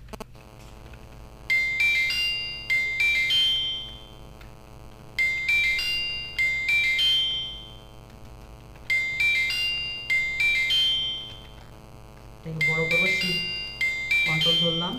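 A phone ringtone: a short electronic melody of high chiming notes, looping about every four seconds, four times.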